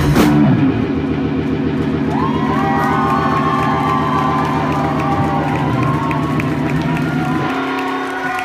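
A rock band's final hit, then an electric guitar chord left droning through the amplifier at the end of the song. From about two and a half seconds in, the crowd cheers and whistles over it.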